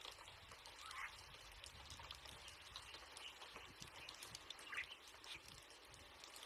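Near silence: faint background hiss with two brief, faint chirps, one about a second in and one near the end.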